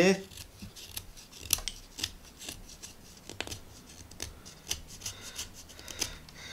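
Ganzo G7392-CF folding knife's 440C stainless blade whittling a green wooden branch: a run of short, irregular scraping cuts as shavings come off, two of them a little louder at about one and a half and three and a half seconds in.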